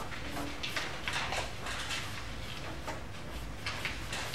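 Pencil drawing on paper: a run of light, scratchy strokes as a line is sketched.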